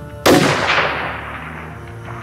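A single shot from a bolt-action sniper rifle: a sharp crack about a quarter second in, followed by a long report that fades away over about a second and a half.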